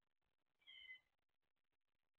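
A single short, faint, high-pitched animal call about half a second in, lasting under half a second and falling slightly in pitch.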